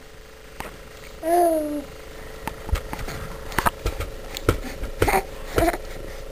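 A short hummed voice sound about a second in, then scattered light clicks and knocks of baby feeding, with a spoon against a bowl and handling, over a faint steady hum.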